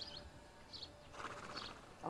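A horse blowing a soft breath out through its nostrils, a faint fluttering exhale about a second in, over quiet outdoor background.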